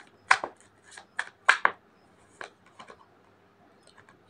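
A deck of tarot cards being shuffled by hand to draw a clarifying card: a string of sharp, irregular card snaps and slaps, two of them much louder than the rest.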